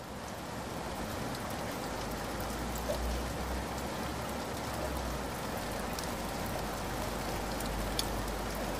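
Steady rain: an even hiss with scattered faint drop ticks, swelling up over the first second and then holding level.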